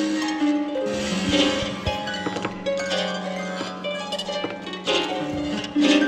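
Harp with live electronics playing plucked notes over long held tones. A low tone is held for about four seconds in the middle.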